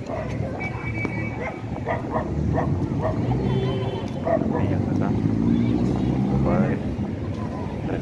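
Street ambience in an open town square: voices of people nearby over a steady rumble of traffic.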